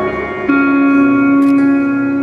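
Live band music between sung lines: guitars play held chords, changing to a new chord about half a second in.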